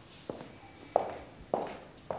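Footsteps on a hard floor: a man walking at a steady pace, three evenly spaced steps.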